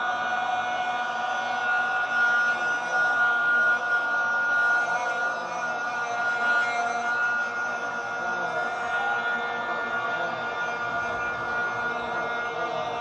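A long, steady, high-pitched tone held without a break through the hall's microphone and loudspeakers, with faint voices beneath it.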